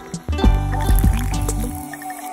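Background music with a steady beat, over a thin stream of fizzy water pouring into a glass jar of ice and fizzing up.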